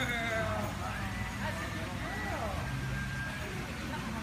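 A faint, distant voice over a steady low background rumble.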